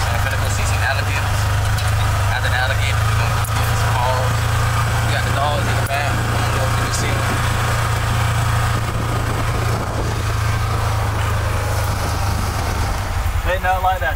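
Polaris side-by-side's engine running with a steady low drone, settling into an even pulsing idle about a second before the end. Faint voices underneath.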